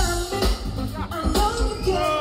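Live band music from electric bass, drum kit and keyboards, with heavy bass and a steady kick beat about twice a second.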